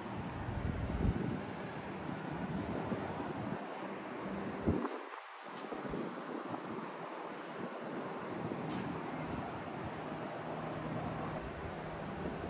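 Wind blowing across the microphone in gusts, with a low buffeting rumble that eases for a few seconds midway. There is one brief thump a little before five seconds in.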